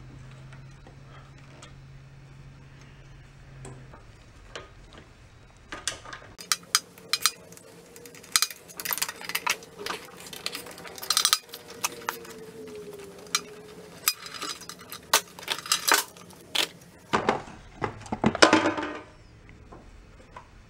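Metal tools and small engine parts clinking and clicking as a wrench works the nuts holding a small engine's carburetor. The first few seconds are quiet, then irregular sharp clinks run from about six seconds in, with a last flurry near the end.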